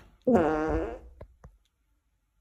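A loud fart lasting under a second, followed by two faint clicks.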